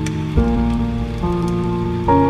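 Chill piano music: sustained chords, with a new chord struck about half a second in and another a little past the middle, over a steady hiss with faint crackles.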